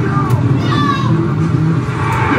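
Engine sound effects of a sit-down arcade racing game as it is driven, a steady car-engine drone with some revving.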